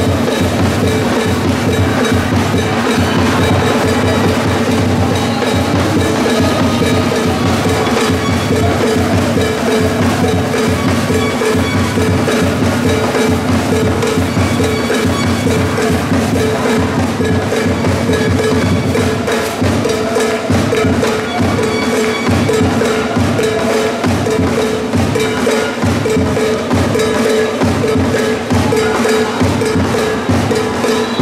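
Rhythmic percussion with a steady beat played without a break: drums, with sharp wood-block and cowbell-like knocks over a held tone.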